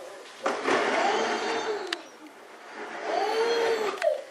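A plastic toy sled sliding over carpet with a rough, steady hiss for about a second and a half, with a brief click near its end, then a baby's drawn-out vocalizing cry near the end.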